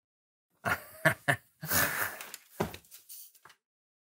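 A man laughing in a string of loud, breathy bursts that begin about half a second in and die away near the end.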